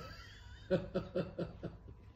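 A person laughing softly: a quick run of about six short "ha" breaths, starting just under a second in.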